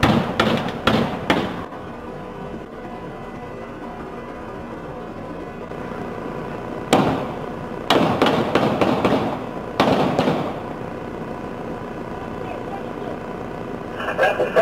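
Four handgun shots in quick succession, about half a second apart, picked up by a police car's dashboard camera. Several more loud bursts follow some seven to ten seconds in.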